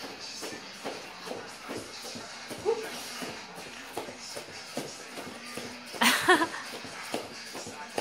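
Bare feet repeatedly landing and shuffling on a foam play mat as a man jumps and steps in place: soft, irregular thumps. Television music and speech play underneath, and a brief voice rises over them about six seconds in.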